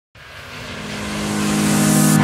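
Intro sound effect for a logo animation: a hissing whoosh that swells steadily louder over a low, steady drone, building up into the opening music.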